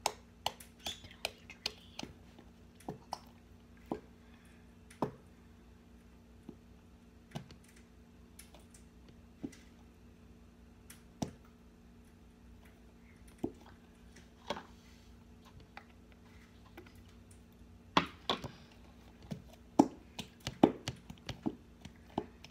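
A plastic bottle of white glue being squeezed over a bowl: irregular clicks and squishes as thick glue and air sputter slowly from the nozzle, more often near the end. A faint steady hum runs underneath.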